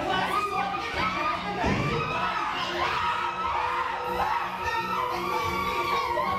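Several stage actors' voices shouting and calling over one another, with music underneath carrying a repeating low note.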